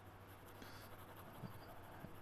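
Faint scratching of a pen on paper as it shades a drawing with quick strokes.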